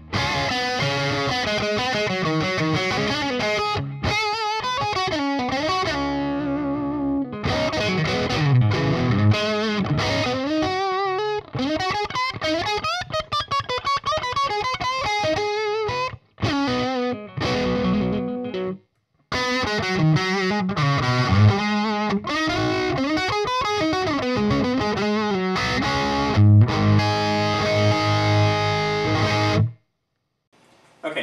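Electric guitar with a classic-rock level of distortion: a 2008 Fender Nashville Telecaster with DiMarzio pickups wired in series humbucking mode, played through a Splawn Quick Rod head on its first gear into a 2x12 cabinet. He plays continuous riffs and chords, with two short breaks in the playing, and stops just before the end.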